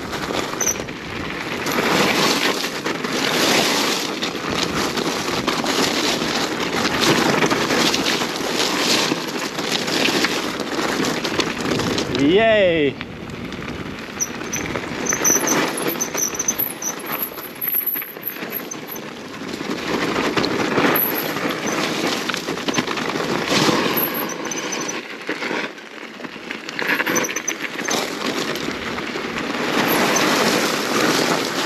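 Electric mountain bike running downhill over loose gravel and rock: a steady crunch of tyres with frequent knocks and rattles from the bike. A short rising squeal is heard about twelve seconds in.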